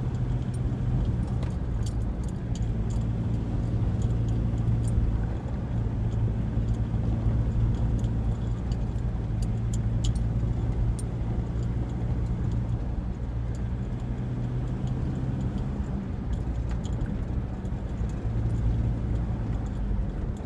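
Engine and road noise inside a moving Ford's cabin: a steady low drone with road rumble, and small light clicks and rattles scattered throughout.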